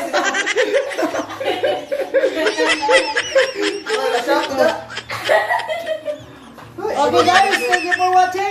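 Several people laughing and chattering over one another, with a short lull about three-quarters of the way through before the laughter picks up again.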